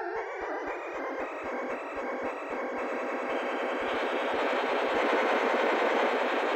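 Live electronic music build-up: a synthesizer noise swell that rises and grows steadily louder, over a faint regular ticking pulse.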